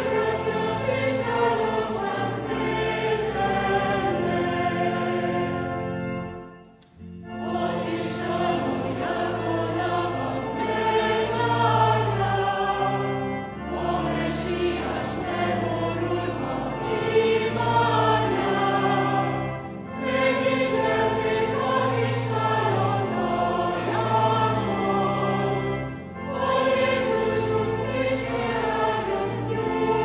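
Mixed choir singing a Christmas carol in sustained, many-voiced harmony in a reverberant church. It goes in phrases of about six seconds, with a brief break between each and the longest pause about seven seconds in.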